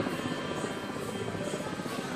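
Devotional temple music with steady, dense percussion and a high beat about twice a second, under faint held tones.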